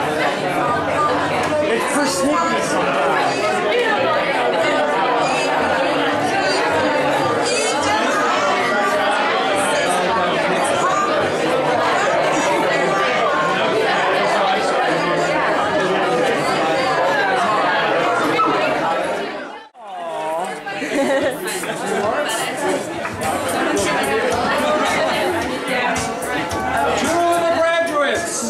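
Many voices talking at once: loud, overlapping party chatter in a room, with a sudden brief dropout about twenty seconds in.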